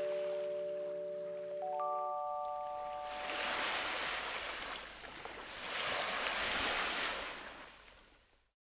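A short jingle of bell-like mallet tones, held notes ringing out and a quick rising run of notes about two seconds in, followed by two swells of wave sound washing in and fading out.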